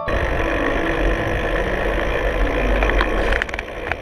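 DJI Phantom quadcopter's motors and propellers running close to the camera: a loud, steady whirring with a heavy rush of air on the microphone. A few clicks and knocks come near the end as the sound drops slightly.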